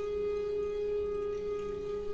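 Long wooden end-blown flute holding one steady note with no breaks, over a fainter, lower steady tone.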